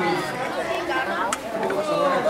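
Chatter of many people talking at once in a busy crowd, with one short sharp click a little past halfway.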